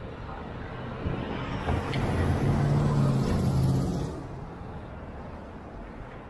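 A motor vehicle driving past close by on a city street, its engine hum swelling from about two seconds in and dropping away after four, over steady traffic noise.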